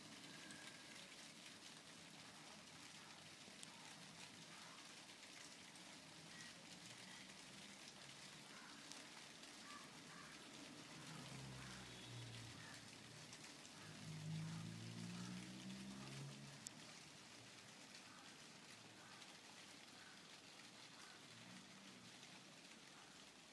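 Near silence: faint hiss with light crackle, and a faint low pitched sound that rises and falls for a few seconds about halfway through.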